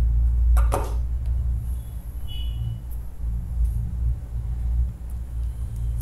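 Steady low background hum in the recording, with a couple of short clicks under a second in and a brief faint high tone near the middle.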